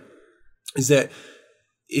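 Speech only: a man says a short phrase between pauses, with a faint breath after it.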